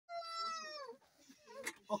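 A single high, meow-like cry lasting under a second, holding its pitch and then falling at the end. A short spoken 'Ok' follows near the end.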